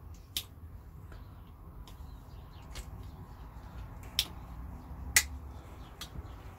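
Lovocoo Parrot non-locking folding knife worked by hand, its blade snapping against the stiff spring with sharp clicks: one just after the start, fainter ticks in the middle, then two more about four and five seconds in, the last the loudest.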